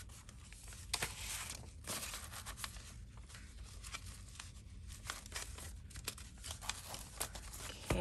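Paper pages of a handmade junk journal rustling and sliding as they are flipped and shuffled by hand, with a scatter of short sharp page flicks.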